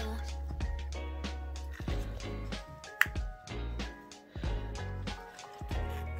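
Upbeat electronic background music with a steady beat and bass, with a single sharp click about three seconds in.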